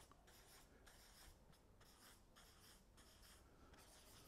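Faint marker pen strokes on flipchart paper as figures are written: a series of short, irregular scratches.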